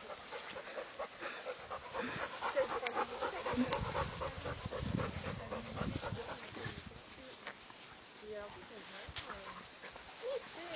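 A large dog panting as a beagle puppy plays with it, with rustling and handling noise heaviest around the middle.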